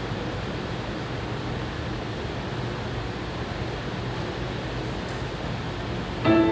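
Steady room noise: an even hiss with a faint low hum and no distinct events.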